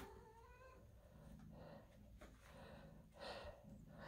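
Faint mewing of young kittens: one drawn-out mew in the first second, then a few soft, faint sounds.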